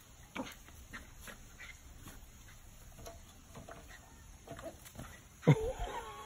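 Welsh Terrier puppy yelping near the end, a sudden cry that slides in pitch and trails into a whine: the pup has just been pecked by the hen.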